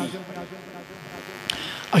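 A pause in a man's amplified speech: a steady electrical buzz from the sound system under a quiet room echo, with one short click about one and a half seconds in. His voice starts again at the very end.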